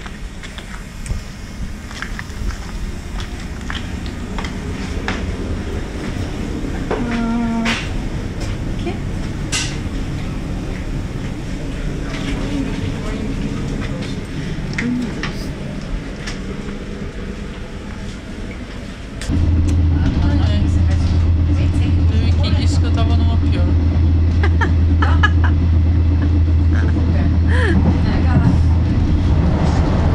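Passenger train carriage interior, with clatter and faint voices at first. About two-thirds of the way in, the level jumps suddenly to a loud, steady low drone of the train running.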